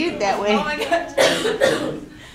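People talking in a lecture room, then two short coughs in the second half.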